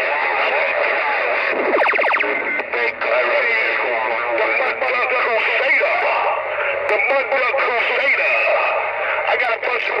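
CB radio chatter on channel 19 coming through the speaker of a Magnum S-9 CB radio: garbled, overlapping voices squeezed into the narrow, thin sound of AM radio. About two seconds in, a brief rapid buzz cuts across the voices.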